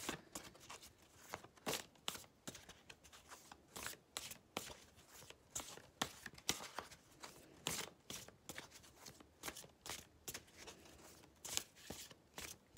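A deck of Lunar Nomad oracle cards being shuffled by hand: an irregular run of soft card slaps and rustles, several a second.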